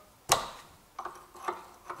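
A 12 mm open-end wrench on the lock nut of a clutch master cylinder pushrod as the nut is loosened: one sharp metallic click, then a few lighter ticks.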